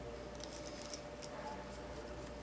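Faint small clicks and rubbing of fingers twisting a plastic wire nut onto the wires.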